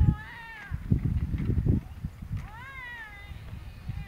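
Wheels of a casket's rolling bier squealing as it is pushed along a concrete sidewalk: two drawn-out squeaks that rise and fall in pitch, one near the start and a longer one in the second half, over a low rumble from the wheels.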